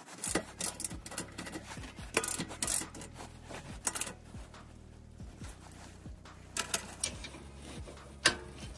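Socket ratchet on an extension tightening the bolts of a steel front skid plate under a pickup, clicking in irregular runs with a few sharper knocks of the socket and tools against the metal as the bolts are cinched down.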